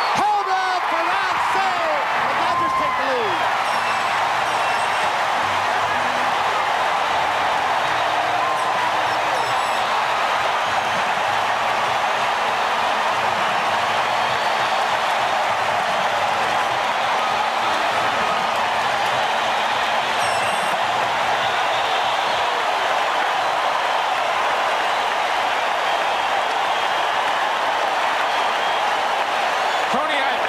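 A large stadium crowd cheering steadily and loudly for a three-run home run.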